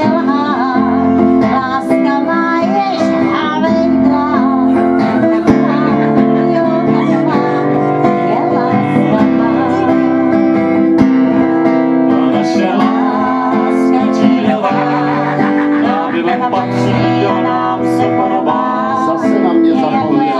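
Live Czech folk song: acoustic guitar strummed steadily while a woman and a man sing together.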